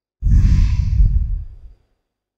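A woman's long sigh, breathed out close to a desk microphone, lasting about one and a half seconds. The breath buffets the mic with a low rumble and fades out before the end.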